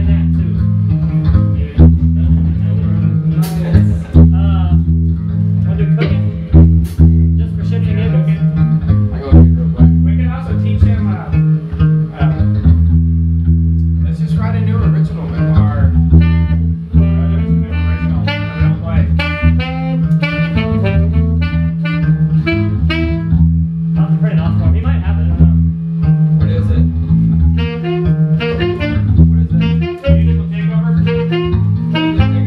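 Ska band rehearsing live in a room: an electric bass line and electric guitar carry the tune, with keyboard playing along.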